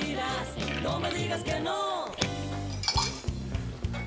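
Background music, with a few sharp clinks of a metal bar spoon against ice and the glass as a caipirinha is stirred, mostly in the second half.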